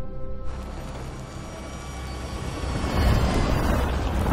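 Film score with steady held tones, joined about half a second in by a rushing, wind-like noise and a low rumble that swell and grow louder toward the end.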